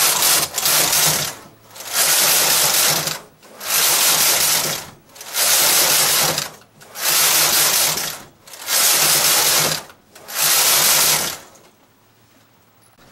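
Carriage of a KH260 bulky knitting machine with KR260 ribber being pushed back and forth across the double needle beds, knitting rows. Seven even passes, each about a second and a half long, with brief pauses between them.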